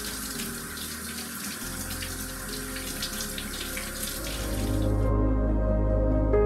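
Water running from a kitchen faucet into a stainless-steel sink as hands are rinsed under the stream. Soft background music comes in under it and grows louder, and the water stops suddenly about three-quarters of the way through, leaving the music.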